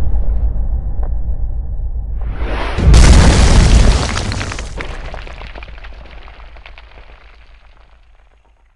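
Cinematic boom sound effect for a TV title animation: a low rumble carries over from an earlier hit, then a short rising swell builds into a loud deep boom about three seconds in, which fades away slowly over the next five seconds.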